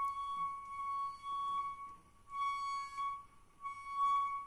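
Whistling from a toilet cistern's water supply line, the braided steel flexible hose, as water runs into the tank. It is a single steady flute-like high note that swells and fades in pulses of about a second, breaking off twice.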